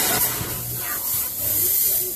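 A pressurised jet of fog hissing out in one long, loud burst that stops after about two seconds.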